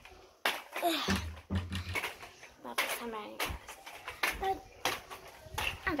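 A girl's voice speaking and exclaiming indistinctly, with a few knocks and handling noises in between.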